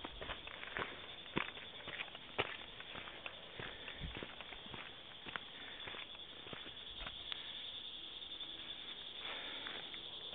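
Irregular footsteps on a dirt and rock trail, over a steady high buzz of insects.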